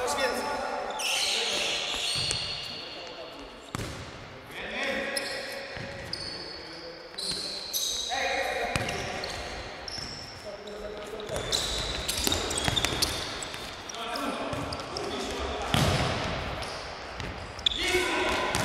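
Indoor futsal game in a reverberant sports hall: players calling out to each other, with sharp thuds of the ball being kicked and bouncing on the hall floor several times.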